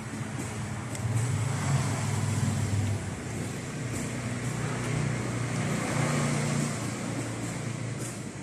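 Low engine rumble of a passing motor vehicle, louder from about a second in and easing near the end.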